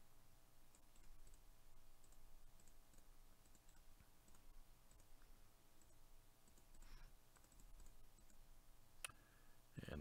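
Near silence with faint computer mouse clicks, scattered and irregular.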